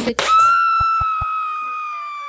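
Electronic editing sound effect: a brief glitchy burst, then a steady synthetic tone with overtones that sinks slowly in pitch, with three soft low thumps beneath it.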